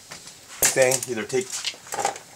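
A man's voice speaking a short phrase that the transcript did not catch.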